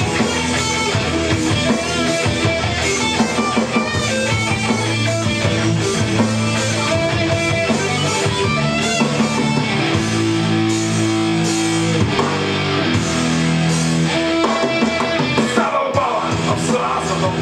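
Electric guitar played live with a rock band in an instrumental passage with no singing. About ten seconds in, notes are held for a couple of seconds.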